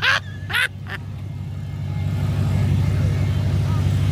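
Outdoor street noise: a steady low rumble of road traffic, with three short sharp sounds in the first second.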